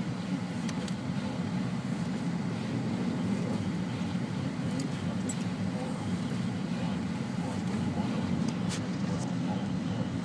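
Steady low road and engine noise inside the cabin of a Jeep Liberty driving slowly on a snow-covered road, with a few faint ticks scattered through.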